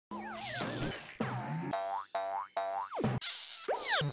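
Cartoon sound effects over a short music jingle: wobbling and falling whistle-like pitch glides, then a quick run of rising boings, and falling glides near the end.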